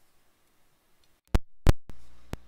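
Lapel microphone's jack plug being inserted into the capture device's microphone input: the feed is dead silent for over a second while the mic is disconnected, then two loud pops as the plug makes contact, and a smaller one just before the end.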